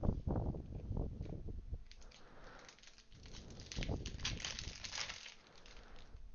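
Prizm basketball trading cards being handled and shuffled close to the microphone. There are low bumps in the first couple of seconds, then crinkling, scraping clicks of cards and pack wrapper.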